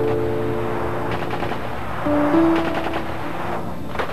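Rapid automatic gunfire starting about a second in and running for a couple of seconds, over sustained music chords.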